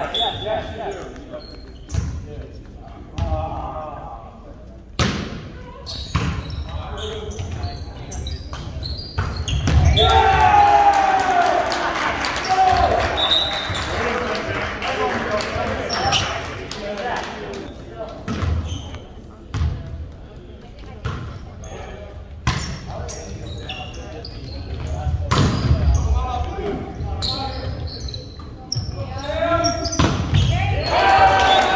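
A volleyball being hit and bouncing on a hardwood gym floor: sharp, echoing smacks scattered through a large hall. Many voices shout together, loudest from about ten seconds in for several seconds.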